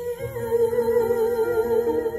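A woman singing live through a microphone and PA, holding one long sung note with a steady vibrato over a soft band accompaniment.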